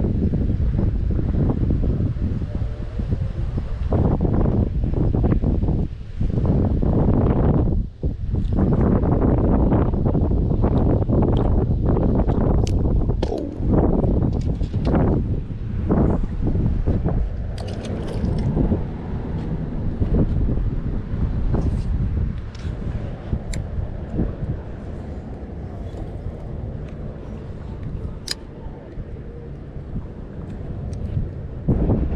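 Wind buffeting an outdoor camera microphone: a loud, gusty low rumble that eases off in the last third, with a few sharp clicks in the second half.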